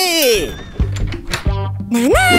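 A cartoon character's wordless exclamation that slides down in pitch, then cartoon background music comes in with low bass notes and a few sharp knocks.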